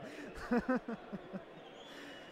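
A person's voice, a few short soft syllables about half a second in, then faint background noise.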